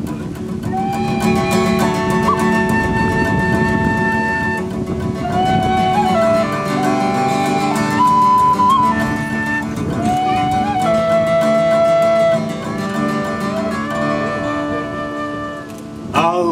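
Tin whistle playing a slow melody of long held notes, sliding up into several of them, over fingerpicked acoustic guitar.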